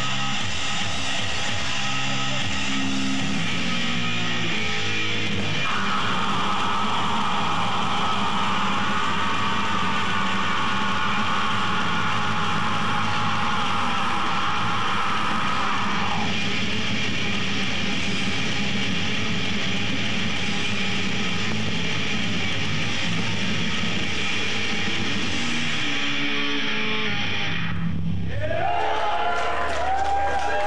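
Death metal band playing live: heavily distorted electric guitars over bass and drums.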